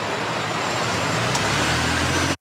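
Steady rushing background noise of an outdoor location recording, like distant traffic, with a low hum coming up in the second half.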